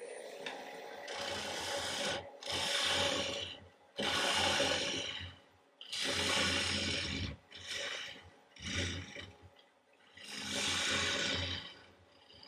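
A turning gouge cutting green, spalted aspen spinning on a wood lathe, in a series of passes each about a second long with short breaks between them.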